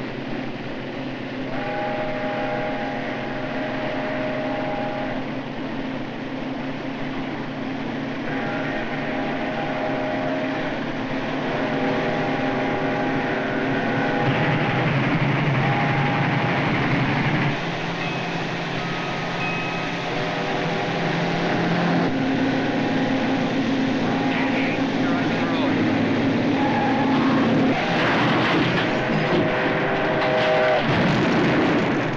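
Steam locomotive whistle blowing a series of long chime blasts, each held for a couple of seconds, over the steady rumble of the running train and a car.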